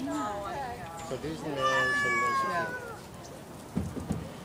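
Voices talking, then a loud, drawn-out vocal call whose pitch slowly falls, lasting about a second, with a short thump near the end.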